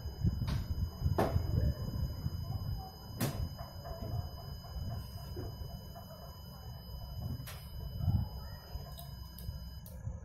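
Piezo buzzer on an Arduino lock sounding one steady high tone for about ten seconds, stopping just before the end: the wrong-card alarm, during which the lock accepts no tag. A few soft knocks are heard along with it.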